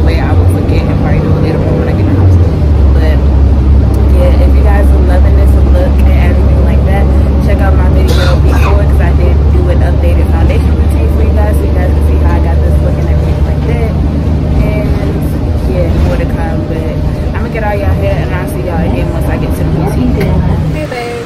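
A woman talking over the steady low drone of a car's engine and road noise inside the cabin; the drone eases about three-quarters of the way through.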